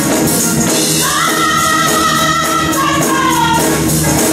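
Live gospel praise singing by a group of women with instrumental backing and a steady rhythmic beat, a sung note held from about one second in until shortly before the end.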